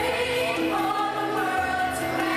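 A choir of over 50 teenagers singing with a rock band in live performance, holding long notes that change pitch every half second or so.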